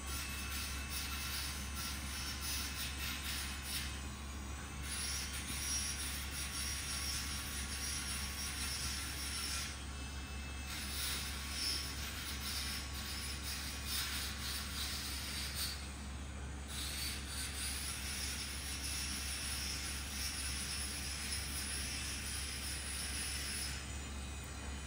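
Steady background machine noise: a constant low hum under an even hiss. The hiss drops out briefly three times.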